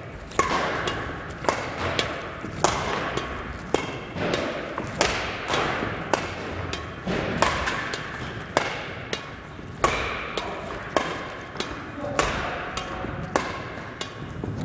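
Badminton rackets striking a shuttlecock in a fast back-and-forth net push drill: sharp, echoing hits about once or twice a second.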